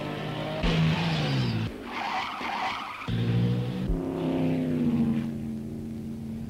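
1930s racing car engines at speed, their pitch falling as cars go past, with a harsh rushing noise over the first three seconds. The sound breaks off sharply a few times, as separate shots are cut together.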